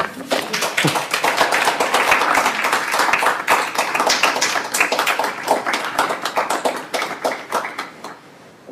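Small audience applauding: a dense patter of handclaps that fades out near the end.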